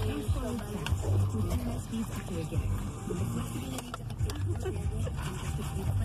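Low, indistinct talking inside a car cabin, with no clear words.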